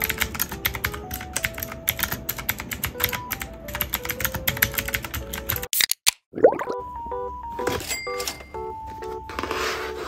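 Fast typing on a mechanical keyboard with round typewriter-style keycaps, a dense run of key clicks over background music for a little over five seconds. After a short break and a swoosh, the music goes on with a few scattered taps and a rustle near the end.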